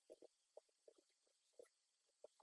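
Faint computer keyboard typing: a run of about ten quick, irregular keystrokes.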